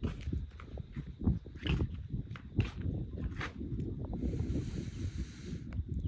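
Irregular soft knocks and rustling from movement close to the microphone, with a brief hiss about four seconds in.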